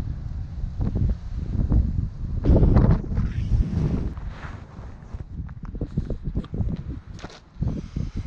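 Wind buffeting the microphone: an uneven low rumble that swells loudest about two and a half seconds in. Scattered light knocks and rustles run under it.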